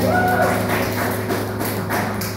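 Acoustic guitar chord ringing out and slowly fading, with a few light taps.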